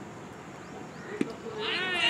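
A cricket ball makes a single sharp crack about a second in as the delivery reaches the batsman, and fielders break into loud, high-pitched shouting near the end as the wicketkeeper raises an arm.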